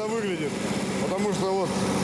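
Car engine idling steadily as it warms up, with a voice speaking briefly over it.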